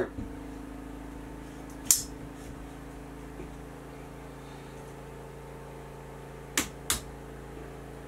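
Vanguard Alta-Pro 263AT tripod's center column being fitted and locked into its clamp: one sharp click about two seconds in, then two quick clicks a third of a second apart near seven seconds, over a steady low hum.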